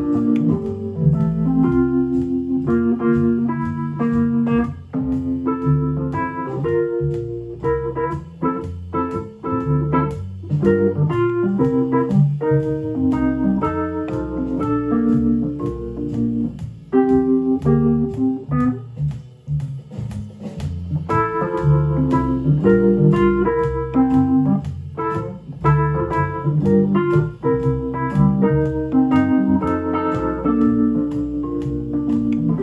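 Wurlitzer electric piano playing jazz over the 'Rhythm Changes' chord progression at 120 beats per minute, with low chords under a higher line of shorter notes.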